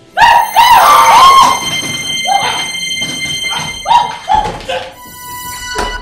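Film soundtrack effects for an eerie appearance: a run of short, pitched, rising-and-falling yelps over held tones, with a sharp whoosh near the end.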